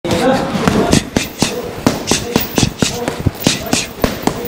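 Boxing gloves striking a hanging heavy punching bag in rapid combinations, about a dozen sharp thuds in quick succession.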